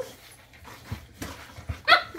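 A boxer puppy and an adult boxer at play, with a few soft knocks and scuffles and a short, high-pitched whine or yip just before the end.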